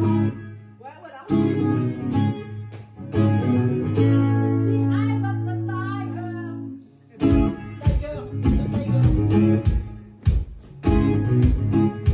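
Acoustic guitar strummed live in choppy, stop-start chords. One chord is left ringing for several seconds in the middle, then rapid strumming picks up again.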